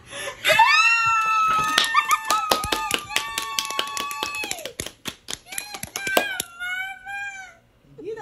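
An excited, very high-pitched scream held for about four seconds over rapid hand clapping, then a second shorter, wavering squeal near the end.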